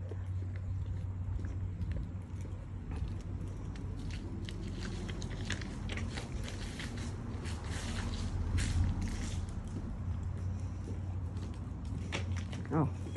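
Close rustling and scattered small clicks from a phone being carried in the hand, over a steady low hum, with the clicks busiest in the middle of the stretch.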